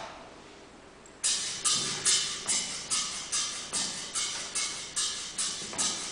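A count-in of evenly spaced sharp percussive clicks, about two and a half a second, starting about a second in, setting the tempo before the song begins.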